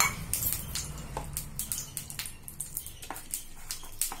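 Metal spoon stirring thick batter in a steel bowl, with scattered light clicks and scrapes of the spoon against the bowl.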